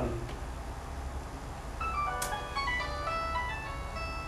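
A simple electronic tune of short, clean notes stepping up and down in pitch starts about two seconds in, over a low steady hum.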